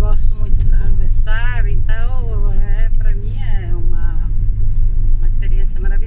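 Steady low rumble of a car's engine and tyres heard from inside the cabin while driving, with a voice over it for the first few seconds.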